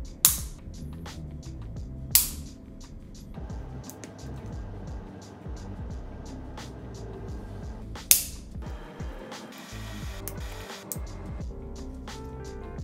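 Pocket Tripod Pro phone-tripod legs snapping out of their hinge as they are forced past their limit: three sharp clicks, two seconds and then about six seconds apart, the hinge letting go without breaking. Background music plays throughout.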